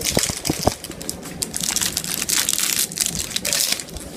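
Popsicle packaging crinkling and crackling as it is handled and opened, with irregular sharp crackles and a few clicks in the first second.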